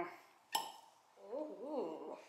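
Cork pulled out of a wine bottle with a wing corkscrew: one sharp pop about half a second in, with a short ring after it.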